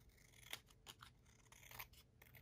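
Scissors making a few faint snips through the paper edge of a small handmade book, trimming off excess. The clearest cut is about half a second in, with a few more near the end.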